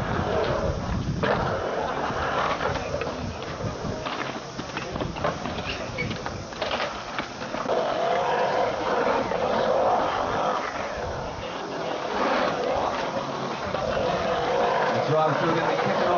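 Skateboard wheels rolling on a concrete bowl, with sharp clacks of the board and trucks in the middle of the stretch. Crowd voices and chatter run underneath.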